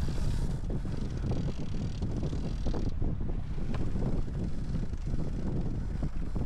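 Wind buffeting the microphone over the rush and hiss of water streaming along a sailboat's hull under sail. The hiss is strongest for the first three seconds, then eases.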